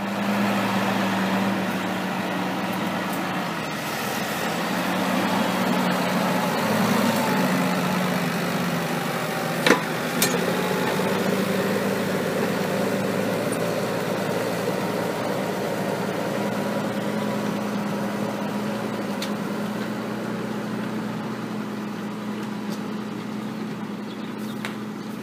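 New Holland tractor's diesel engine running steadily under load while pulling a reversible plough through the soil. Two sharp clicks come about ten seconds in.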